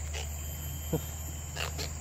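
A man's short grunted "huh" about a second in, over a steady low hum of outdoor background noise, with a few faint ticks and splashes near the end as a hooked lawang fish is swung up out of the river.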